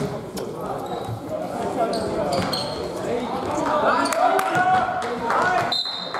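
Basketball bouncing on a hardwood-style gym floor, with players' and spectators' voices chattering in a large echoing sports hall.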